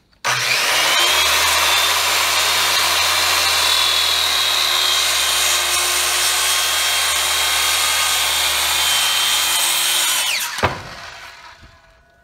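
Corded DeWalt circular saw cutting a long diagonal through a pine board. It starts suddenly and runs under load with a steady high whine for about ten seconds, then winds down with a falling pitch and a knock once the cut is through.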